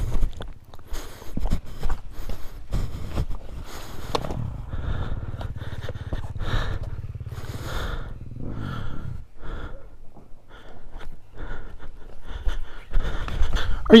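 Dirt bike engine running at low revs over rocky singletrack, with repeated knocks and scrapes from rocks and brush; its pitch swells briefly about eight seconds in.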